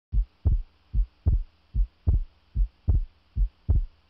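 Heartbeat sound: deep thumps in steady lub-dub pairs, about 75 beats a minute.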